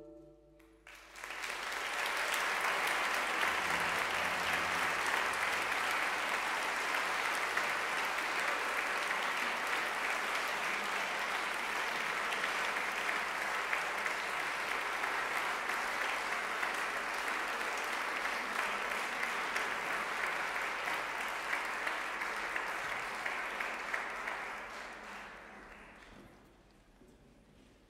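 Concert-hall audience applauding: the clapping starts about a second in after a brief hush, holds steady for over twenty seconds, then thins out and fades near the end.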